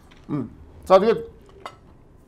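Two short wordless vocal sounds from a man at the table, a brief one about a third of a second in and a louder one about a second in, with light clinks of cutlery and dishes, one sharp click near the end.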